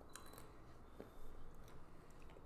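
Quiet room with a few faint, short clicks: a small cluster early on and one sharper click about a second in.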